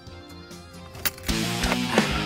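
Soft background music, then a sharp click about a second in, and loud rock music with guitar and heavy drums comes on from the car radio as the ignition is turned.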